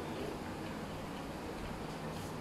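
Quiet, steady room noise with faint light ticking and no distinct events.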